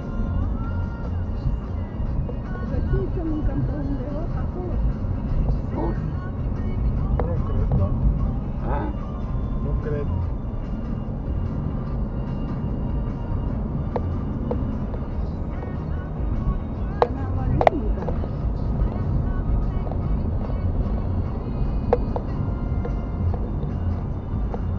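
Steady low rumble of road and engine noise inside a moving car, picked up by a dashcam's microphone, with a few sharp clicks past the middle.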